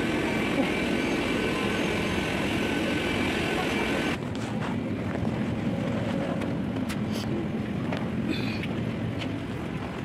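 Steady rushing hum of a parked airliner's ventilation with a faint high whine, heard at the boarding door, under passengers' murmur. About four seconds in it drops suddenly to a quieter steady cabin hum with small knocks of boarding passengers.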